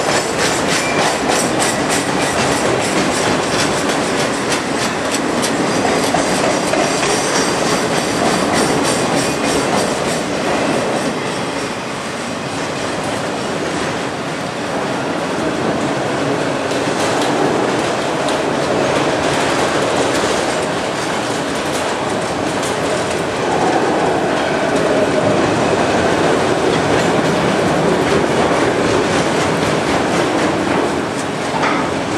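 Freight train of multilevel autorack cars rolling past close by: a loud, steady rumble and rattle of steel wheels on rail, with a rapid clickety-clack of wheels over rail joints, plainest in the first ten seconds or so.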